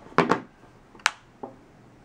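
Hard plastic phone case clicking and knocking as it is handled and snapped onto an iPhone 5: a couple of short knocks at the start, then one sharp click about a second in and a fainter one shortly after.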